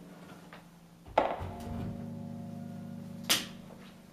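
An electric guitar chord fading through a Fender Blues Jr. valve combo amp. About a second in there is a thunk as the guitar is set down, and its open strings ring on through the amp. A sharp click comes near the end, and the ringing fades after it.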